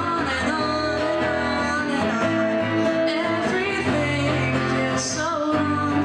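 Live singing with an acoustic guitar accompaniment.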